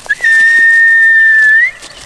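A person whistling one long, steady high note that slides up at the end, lasting about a second and a half, to call a dog.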